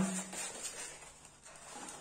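Soft rustling and scraping of a thin foam sheet being handled and laid in place on a foam model, fading off toward the end.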